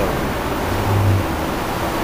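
Steady roar of city street traffic, with a brief low hum about a second in.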